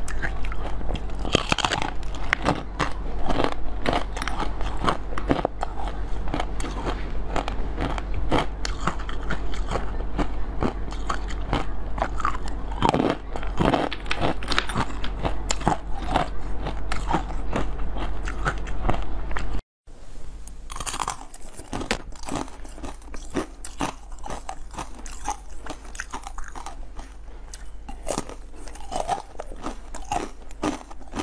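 Close-miked biting and chewing of frozen jelly: dense, crackly crunching bites one after another. A brief dropout comes about two-thirds of the way through, and the crunching then carries on more quietly.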